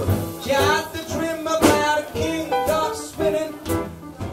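Live swing band playing, with double bass and a singer's voice.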